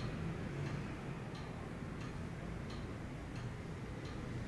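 Faint, evenly spaced light ticks, about three every two seconds, over a low steady room hum.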